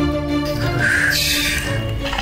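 Dramatic background music score with long held tones. About halfway through, a short harsh, raspy sound cuts in over it.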